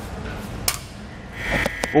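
A sharp click as the breakaway switch pin is pulled. About a second and a half in, the Hydrastar hydraulic brake actuator's electric pump starts a steady high whine, deadheaded at maximum pressure for a leak check.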